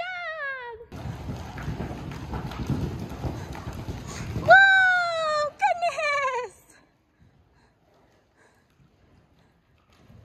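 Horse whinnying: a quavering call falling in pitch at the start, then two more falling calls about four and a half and six seconds in. A stretch of rough noise fills the gap between the calls.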